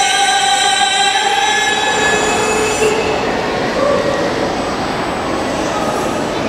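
Live rebana (frame-drum) ensemble performing qasidah music. A long held sung note lasts about three seconds, then gives way to a dense noisy stretch with only faint pitched sounds.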